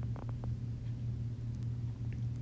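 A pause in speech holding a steady low electrical hum over faint background hiss, with a couple of faint ticks early on.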